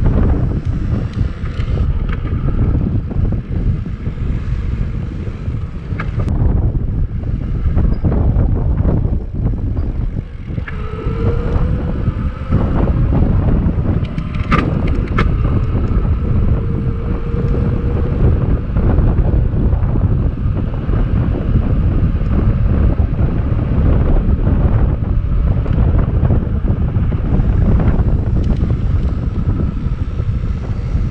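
Wind buffeting the microphone of a handlebar-mounted camera on a moving e-bike, a steady low rumble throughout. A faint whine, rising slowly in pitch, runs under it for several seconds around the middle, and there is a single sharp click partway through.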